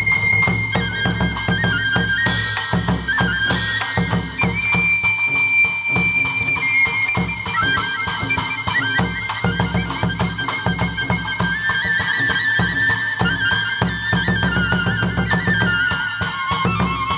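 Chầu văn ritual ensemble playing an instrumental passage: a high flute melody of long held, ornamented notes over a steady drum beat and clicking percussion.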